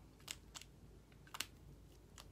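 Near silence with a few faint clicks from a liquid eyeliner pen being handled.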